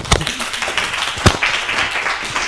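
A small audience clapping, a dense patter of hands with a couple of louder single claps standing out.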